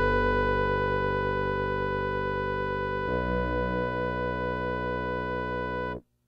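Keyboard music of sustained synthesizer chords without drums. The chord changes about three seconds in, and the music cuts off abruptly at the end.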